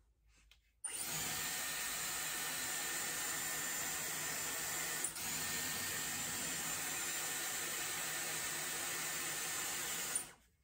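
Dyson Airwrap hair styler switched on about a second in, blowing a steady rush of air with a thin high motor whine as hair is wound around its barrel. It dips briefly about halfway and cuts off at the very end.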